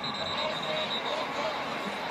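Steady stadium crowd noise, with a faint high whistle held for about the first second.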